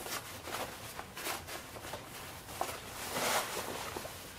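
Fabric carry bag rustling and scraping as it is pulled off a folded travel cot, in several short swishes, the loudest about three seconds in.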